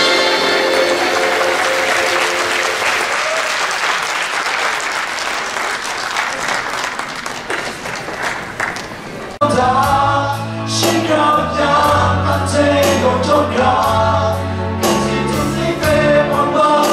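Audience applause, with music fading out under it at the start. About nine seconds in it cuts abruptly to a group singing into microphones over a steady instrumental backing.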